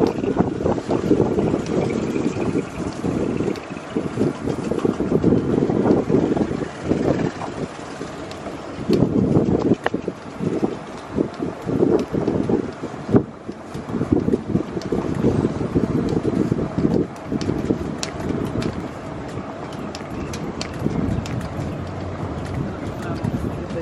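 Wind buffeting the microphone from the open side of a moving resort shuttle cart, in uneven gusts, with a few sharp knocks and rattles as the cart runs over paving.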